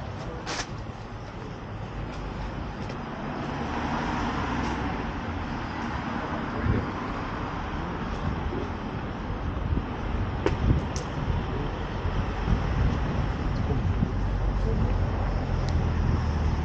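City street ambience: steady road traffic from passing cars with low rumble, broken by a few short sharp clicks.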